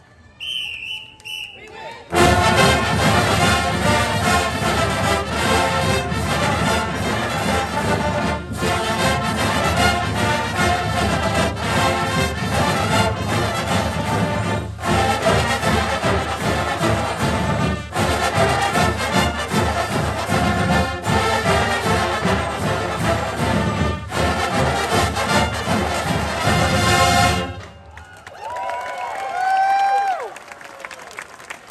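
A large brass marching band playing a lively tune that starts about two seconds in and stops abruptly near the end. A crowd then cheers and whistles.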